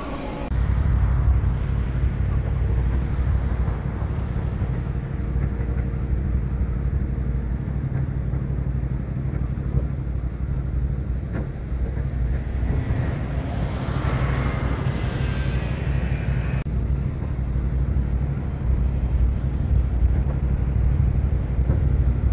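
Outdoor street noise: a steady low rumble of road traffic, with a vehicle passing a little over halfway through.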